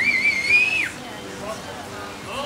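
A high-pitched whistle that rises, wavers and holds for nearly a second, then drops away, over voices chattering.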